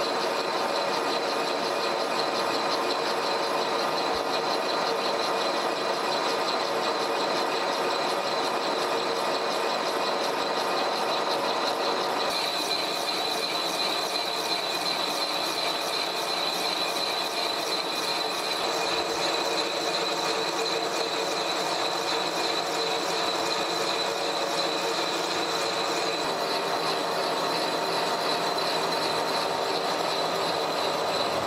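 Horizontal boring mill spindle turning a boring bar through a steam-engine cylinder, the cutter taking about a twenty-thousandths cut: a steady machining hum with a high, steady whine. About twelve seconds in the sound shifts, the low part thinning and the high whine standing out more.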